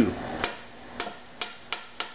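A metal measuring cup and a silicone spatula knocking and clicking against a stainless steel pot as shortening is scraped out into it: four short sharp knocks at uneven intervals.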